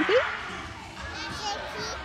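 Echoing hubbub of children playing in a large indoor hall, with a distant child's high wavering squeal a little over a second in.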